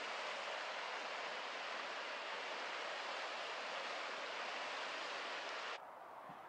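Steady rushing of the Snake River running over rocks and riffles, which cuts off suddenly near the end.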